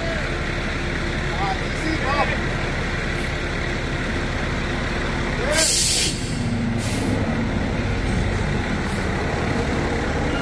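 Slurry seal truck's diesel engine running steadily, with a loud burst of air hissing out a little past the middle, like an air brake releasing, and a shorter hiss about a second later.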